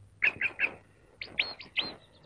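A bird chirping: three short chirps, then about a second in three higher chirps that rise and hold.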